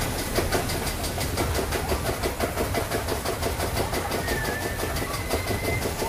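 A spinning roller coaster's chain lift clacking in a rapid, even rhythm over a low steady hum as the car is hauled up the lift hill. A thin steady whine joins in for the last two seconds.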